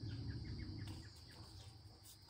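Outdoor ambience: a steady high insect drone, typical of crickets, with a quick run of faint chirps in the first second over a low rumble.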